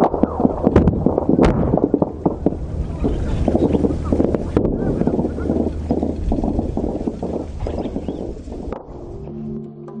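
Outdoor field recording of rapid sharp cracks, typical of gunfire, with indistinct voices over a low rumble; it cuts off abruptly near the end. An electronic intro tune with mallet-like notes then begins.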